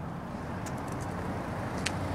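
Steady outdoor background noise with a low rumble of vehicles, and a couple of faint clicks, about midway and near the end.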